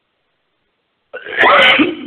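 About a second of silence, then a man's voice: a short, loud vocal sound lasting less than a second.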